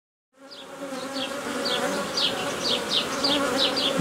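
Honeybees buzzing over the frames of an open hive: a steady hum that fades in shortly after the start and grows louder. Repeated short high chirps, two to three a second, sound above it.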